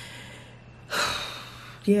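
A woman's audible breaths between words: a fading breath at the start, then a louder breath about a second in. A spoken word follows right at the end.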